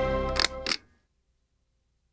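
Production-logo sting music with held notes that stops about two-thirds of a second in. Near its end come two sharp clicks about a quarter second apart, shutter-like, and the sound then cuts off.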